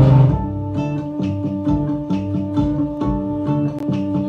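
Music on plucked guitar, notes picked at about four a second over held tones. A louder, denser passage breaks off just as it begins.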